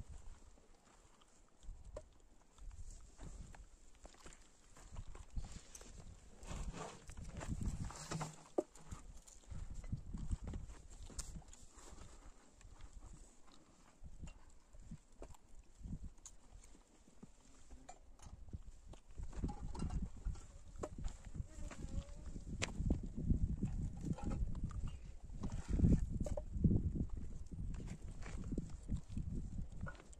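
Animal-skin churn bag being squeezed and handled over an aluminium pot to press out butter: irregular soft knocks and rustles with scattered clicks, louder in the last third.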